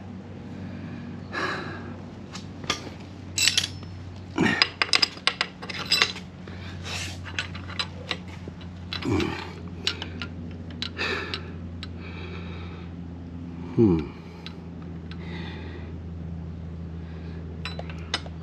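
Aluminium transmission case clinking and knocking against the engine block as it is worked into position for a test fit, with a burst of sharp metal clicks in the first half and a few more later. A steady low hum runs underneath, and three short sounds drop in pitch along the way.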